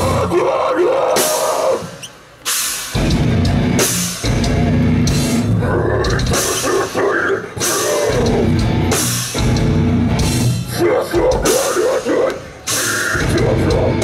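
Live hardcore band playing at full volume: distorted guitars, bass and drum kit under shouted vocals. The band cuts out briefly about two seconds in, then comes back in.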